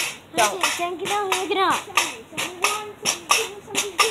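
Pogo stick bouncing on concrete, a sharp knock two or three times a second, under a voice making high, wavering sounds with no clear words.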